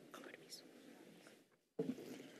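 Faint room sound with quiet whispering. About one and a half seconds in, the sound cuts out completely for a moment and then returns.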